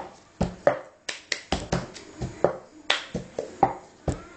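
Cup-song rhythm played with a plastic cup: hand claps alternating with the cup being tapped and knocked on a table, a steady run of about four sharp strikes a second.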